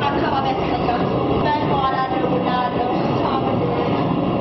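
A woman singing into a microphone, with more voices and a dense, steady wash of noise beneath her.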